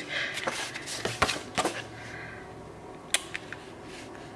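A kraft-paper note card and the box's paper packing being handled: a run of soft rustles and clicks in the first two seconds, then a few sharper taps a little after three seconds.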